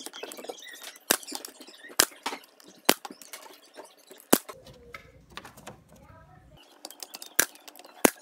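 Brad nailer firing nails through trim moulding into a bookcase: a string of sharp single shots, the first few about a second apart, then a longer gap before another, with lighter clicks of handling between.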